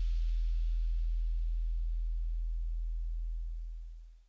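Outro sound effect: a deep, steady bass tone with a faint hiss above it that thins out, both fading away near the end.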